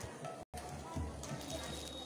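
Faint, indistinct voices talking in the background, with the audio cutting out completely for a split second about half a second in.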